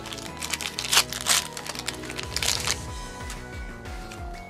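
Foil booster-pack wrapper crinkling and tearing as it is pulled open by hand, in sharp crackly bursts over steady background music.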